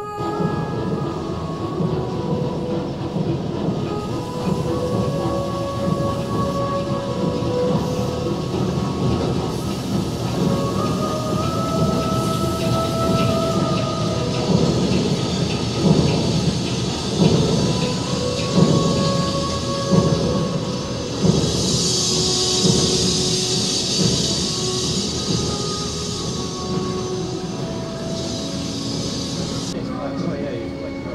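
Museum projection soundtrack of a steamship's engine room: a heavy, steady mechanical rumble with irregular thuds in the middle, faint music over it, and a high hiss rising over the rumble past the middle before it fades.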